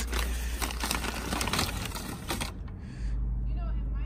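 Crumpled USPS Express Mail envelope crinkling and rustling as it is handled and its contents pulled out; the crackle stops about two and a half seconds in, leaving a low steady hum.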